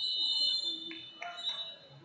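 Mat-side timer buzzer sounding a steady high electronic tone for the end of a wrestling period, cutting off about half a second in. After it, the murmur of a large sports hall.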